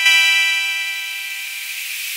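A synthesized swell: a held chord of steady tones under a bright, airy hiss, loudest at the start and slowly fading away.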